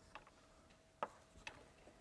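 Chalk tapping on a blackboard while a curve is drawn: about four sharp, irregularly spaced clicks over a faint steady hum.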